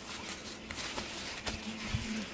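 Faint rustling of a satin fabric dust bag being handled and unfolded, with a few soft taps scattered through it.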